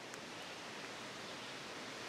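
Faint steady hiss of outdoor background noise on a wooded forest floor, with no distinct sounds in it apart from a tiny click just after the start.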